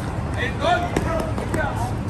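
Sneakers slapping on concrete as a runner sprints past, with a few sharp footfalls about a second in and again a moment later.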